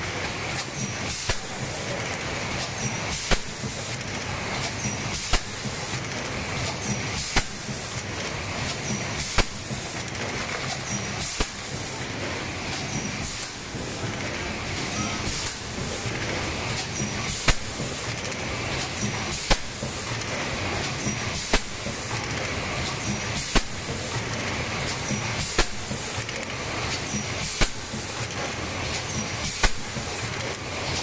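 Six-cavity fully electric PET blow moulding machine running in production: a sharp clack about every two seconds as the mould cycles, each with a burst of compressed-air hiss from blowing and exhausting the bottles, over steady machine noise.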